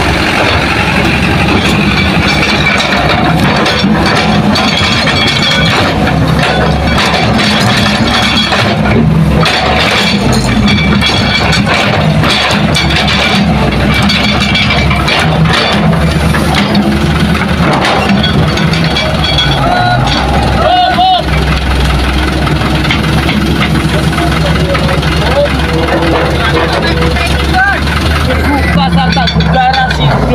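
Diesel engines of dump trucks and an excavator running steadily and loudly throughout, with voices heard over them at times.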